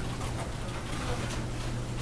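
Quiet classroom room tone: a steady low hum with faint scattered rustles and small clicks.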